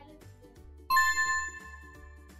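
Bright quiz-show chime sound effect about a second in, several bell-like tones struck together and ringing out for about half a second, signalling the correct answer being revealed. Steady background music runs underneath.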